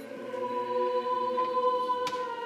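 Sacred singing of a slow hymn in a church, with one long chord held through most of the moment before the next one begins.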